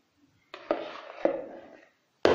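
Two sharp knocks, about half a second apart, each fading away: a utensil tapped against a dish while whipped cream is put onto the cake layer.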